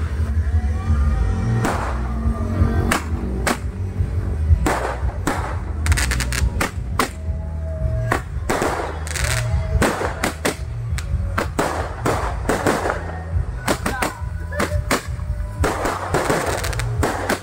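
Fireworks and firecrackers going off in a run of sharp bangs, coming thicker in the second half, over loud music with a strong bass.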